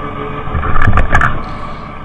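Tractor engine running steadily while mowing, with a brief cluster of sharp clacks and knocks about a second in.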